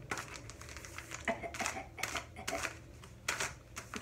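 A packaged bag of coffee being handled and rubbed, its wrapping crinkling and rustling in a string of short, sharp crackles.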